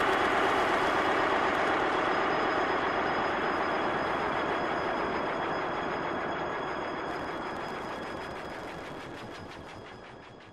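A steady, dense rushing noise with no clear tune, fading out slowly to the end: the closing wash of the edit's soundtrack.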